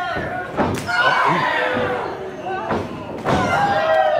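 Two sharp smacks of strikes landing between wrestlers in the ring, one just under a second in and one near the end, with shouting voices between them.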